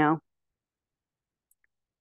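Near silence after a woman's last word, with a faint click about a second and a half in.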